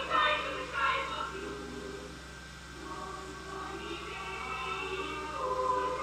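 Film score with a boys' choir singing over the orchestra. It sinks quieter about two seconds in, then builds again toward the end. A steady low hum runs underneath.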